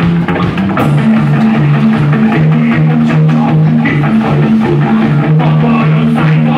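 Live rock band playing an instrumental passage, loud: an upright double bass repeats a line alternating between two low notes, under electric guitar and a drum kit.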